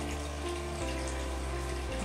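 Steady background hiss with a low hum underneath, room tone in a gap between speech.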